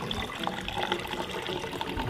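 Sparkling water pouring from two cans into two tall glass boots at once, a steady splashing of liquid into the glasses as they fill.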